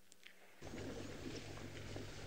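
Near silence, then about half a second in a live outdoor sound feed cuts in: a steady low hum and background noise with faint bird calls over it.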